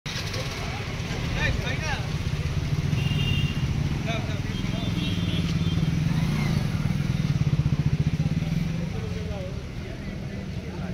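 A motor vehicle engine running close by, with people's voices over it.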